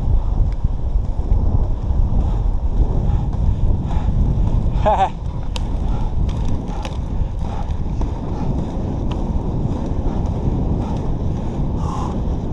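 Inline skate wheels rolling on asphalt under steady rumbling wind buffeting on the microphone, from a strong headwind.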